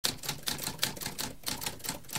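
Typewriter keys being typed in a quick, even run of sharp mechanical keystrokes, about six or seven a second.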